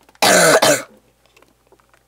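A person coughing once, a loud cough under a second long that starts about a quarter second in, from a cold he has had for almost three weeks.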